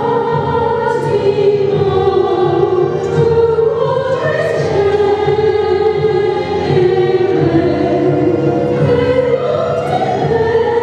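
A mixed choir singing with a male and a female soloist over instrumental accompaniment, in long, held notes with a slowly moving melody.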